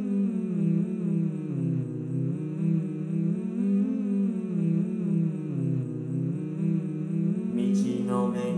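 Four-part male chorus of Vocaloid singing-synthesizer voices humming sustained chords, the pitch swelling up and down slowly. A brief sharp hiss near the end as a new sung phrase begins.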